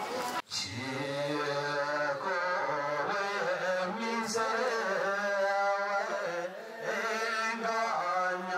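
A group of voices singing a slow traditional Bhutanese circle-dance song, holding long drawn-out notes. It starts after a brief break about half a second in.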